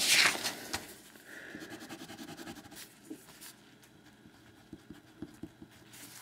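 Sheet of paper rustling sharply as it is moved at the start, then faint scattered taps and handling sounds of paper and a pen on the table.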